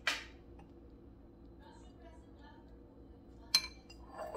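A metal spoon scraping salsa out of a glass jar, a short burst right at the start. About three and a half seconds in comes one sharp, ringing clink of the spoon against the dish.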